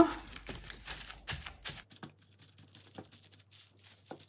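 Thin sewing-pattern tissue paper wet with matte medium being pressed and scrunched under fingertips: irregular soft crinkles and light taps, busier in the first two seconds, then sparse and faint.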